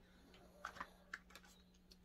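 Near silence with a handful of faint, light clicks clustered around the middle.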